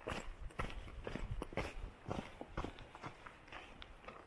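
Footsteps of a hiker walking on a dirt and gravel trail, a few irregular steps each second.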